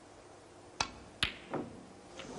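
Snooker cue tip striking the cue ball about three-quarters of a second in, then the sharper, louder click of the cue ball hitting the yellow about half a second later. This is followed by a duller knock as the yellow catches the pocket and does not go in cleanly.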